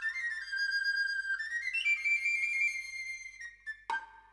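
A flabiol, the small Catalan three-holed flute, plays the solo introit of a sardana: a single high melody climbing in steps, with held notes and quick ornaments. Near the end one sharp drum stroke sounds, the tamborí tap that closes the introit before the cobla band comes in.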